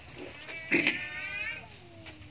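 A goat bleating once, a wavering call of about a second that starts a little under a second in and tails off with a falling pitch.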